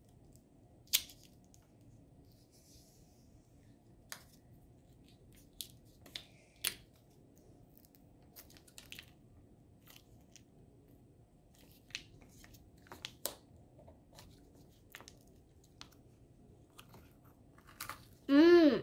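Quiet chewing of Kinder Joy chocolate cream with its crunchy wafer balls, broken by a scattering of short sharp clicks and crunches. The loudest click comes about a second in, another near the seven-second mark.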